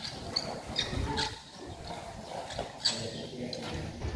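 Faint voices of people talking in the background, with several short, sharp clicks or knocks.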